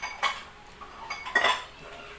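A metal fork and chopsticks clinking and scraping against a plate of noodles, with a few sharp clinks. The loudest comes about one and a half seconds in.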